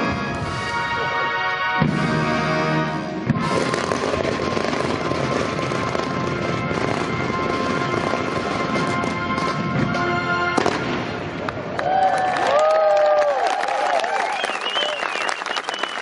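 Military band music, then dense crackling fireworks from about three seconds in, with the music still beneath. Near the end, high whistles rise and fall over the crackle.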